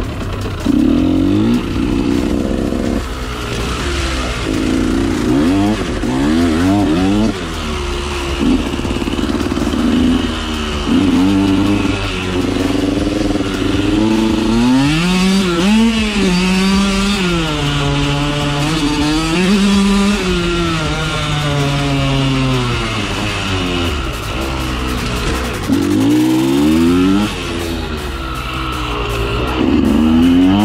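2013 KTM 125 SX two-stroke single-cylinder dirt bike engine being ridden hard, its revs repeatedly climbing and dropping as the rider works the throttle and shifts gears. There is a long dip in the revs about two-thirds of the way in before it pulls up again near the end.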